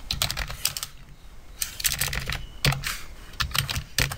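Computer keyboard being typed on, keystroke clicks coming in several short bursts.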